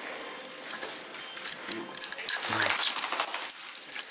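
A dog's claws clicking and scrabbling on a hard tile floor as he moves about quickly, busiest and loudest from about two to three and a half seconds in.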